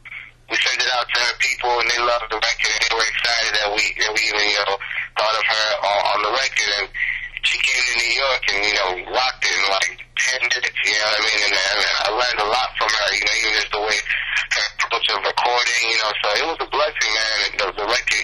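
A person's voice carrying on almost without a break, with only short pauses, and a faint steady hum underneath.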